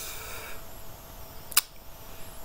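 A single short, sharp click about one and a half seconds in, after a soft hiss fades out in the first half-second, over quiet room tone.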